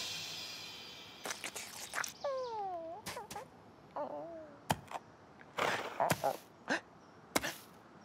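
Cartoon soundtrack: music fades out at the start, then comes sparse foley of small clicks and rustles. Little cartoon vocal noises from the ostrich character include a falling whine about two seconds in and a wavering squeak about four seconds in.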